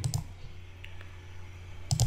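A single computer mouse click, starting the slide show, then quiet room tone with a steady low hum and a couple of faint ticks.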